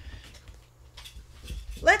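Low bumps and faint rustling of movement as a person turns and picks up a book.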